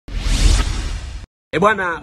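Whoosh sound effect of a channel intro sting, lasting just over a second and cutting off abruptly. A man starts speaking right after a brief gap.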